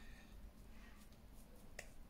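Near silence: low room tone with a few faint, soft clicks, the clearest near the end, from fingertips patting and spreading primer on the skin.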